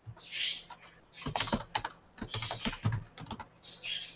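Typing on a computer keyboard: a run of quick key clicks, busiest from about a second in.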